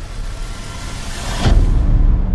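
A rising whoosh that swells for about a second and a half, then cuts into a sudden deep boom with a low rumble that carries on: a cinematic transition effect in the soundtrack.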